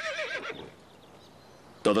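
A horse whinnying: a high, wavering call that trails off about half a second in.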